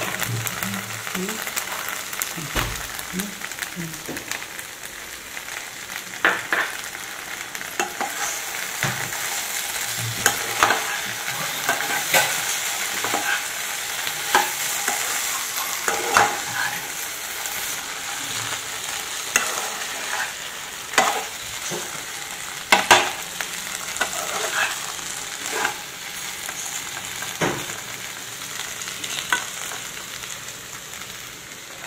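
Chopped eggplant frying in oil in a nonstick kadai while it is stirred: a steady sizzling hiss with irregular sharp knocks and scrapes of the stirring utensil against the pan.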